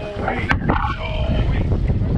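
Strong wind buffeting the microphone on an open boat, with raised voices calling over it and a single sharp knock about half a second in.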